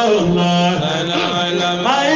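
Male voice chanting a Sufi devotional qasida in Arabic, holding one long low note for about a second and a half before gliding up into the next phrase near the end.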